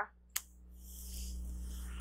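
Quiet room tone with one short sharp click shortly after the start; a faint high hiss rises in behind it and holds steady over a low hum.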